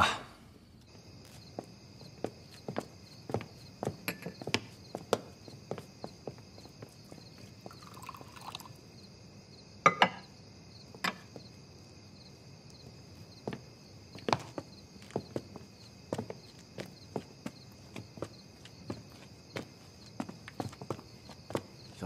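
Night garden ambience: a steady high chirping of insects, with scattered footsteps and soft knocks throughout, the loudest about ten seconds in.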